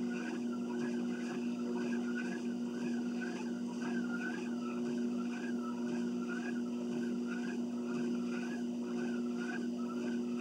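Home exercise machine in use: a steady motor-like hum under a rhythmic rising-and-falling squeak that repeats a little under twice a second, in time with the strides.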